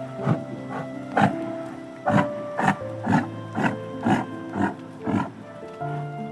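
Soft background music with a series of about ten short animal calls over it, roughly two a second.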